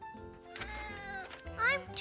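Soft background music with held notes, then a short rising cat meow near the end.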